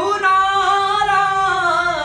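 A man singing a Hindustani vocal phrase, sliding up into one long held note just after the start and easing down near the end. It is a teacher's sung example of phrasing and breath placement.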